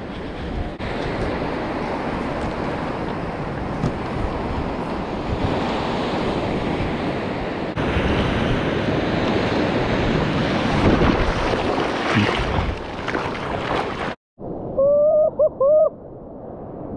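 Waves breaking and surf washing up the beach, with wind rumbling on the microphone, as a steady rushing noise. Near the end the noise cuts out and a short, loud pitched sound of about three quick bending notes follows.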